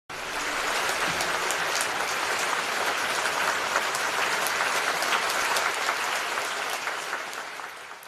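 Audience applause in a concert hall, a dense steady clapping that dies away near the end.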